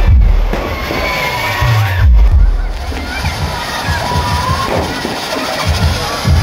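Aerial firework shells bursting with deep booms, one right at the start and another about two seconds in, over the continuous noise of a crowd.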